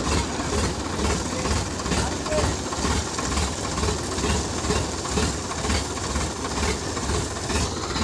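Diesel tractor engine idling, with a steady low throb.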